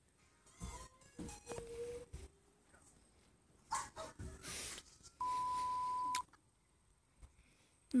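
Scattered short noises and faint voices from a played-back clip, then a steady high beep that holds one pitch for about a second, a little past the middle.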